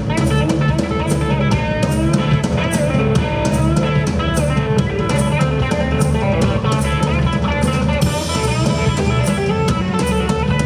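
Live rock band playing an instrumental passage with no singing: a Gibson SG electric guitar over a drum kit, with a steady beat.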